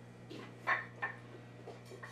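A few light knocks and rustles of wooden rifle-stock offcuts being handled, the loudest about halfway in, over a low steady hum.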